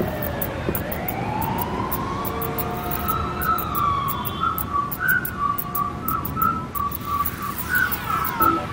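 A small flying robot's electronic whistles and beeps: a whistle-like tone slides down and back up, then from about three seconds in breaks into a run of short chirping beeps, over faint rapid clicking.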